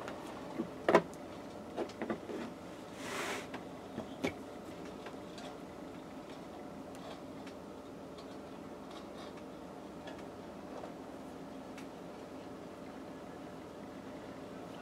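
Kite string being wound tightly around a gathered bundle of cotton t-shirt fabric to tie off a fold, with a few light knocks against the table and a short rustle in the first few seconds, then only faint handling over a steady room hum.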